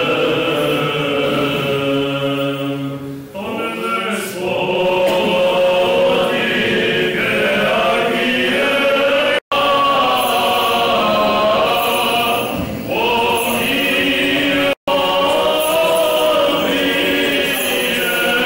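Church choir singing Orthodox liturgical chant, several voices holding and changing sustained notes. The sound breaks off for an instant twice.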